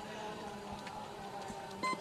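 Faint stadium background sound under a pause in the commentary: a steady murmur with a low hum, and a short electronic beep near the end.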